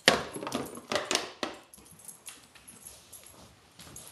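Chesapeake Bay retriever making short, noisy sounds as she moves about: a quick run of them in the first second and a half, then only faint scattered clicks.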